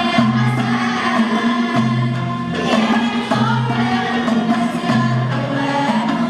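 Moroccan malhun ensemble performing: violins, oud and lute playing with a group of voices singing together, over a low note that comes back about every second and a half.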